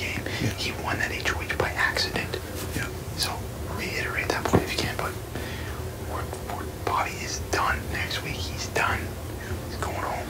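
People whispering to each other in hushed, breathy voices over a steady low room hum, with a single sharp click about halfway through.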